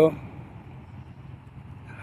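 Steady low outdoor background rumble, like distant road traffic, with no distinct events.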